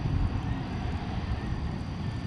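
Steady low rumble and wind noise while riding a moving chairlift downhill.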